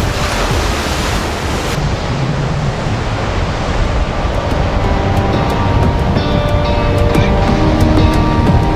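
Surf breaking on a beach, over background music. The surf noise drops away abruptly about two seconds in, and the music carries on, with held notes coming in around the middle.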